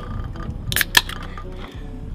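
Hip-hop beat playing in the background, with two sharp clicks close together just before a second in.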